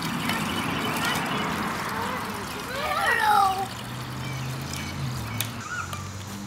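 Liquid poured from a plastic bucket into a plastic hand-pump sprayer jug, a steady splashing pour for the first couple of seconds. A short wavering pitched voice-like sound follows about three seconds in.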